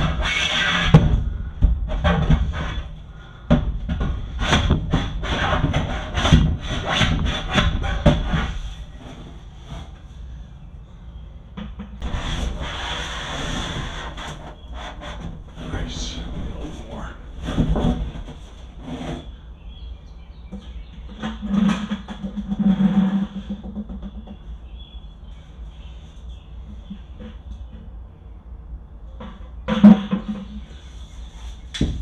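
A shovel scraping and scooping thick mulch dye off the bottom of a plastic tote, in quick repeated strokes for about the first eight seconds, then in slower, scattered scrapes.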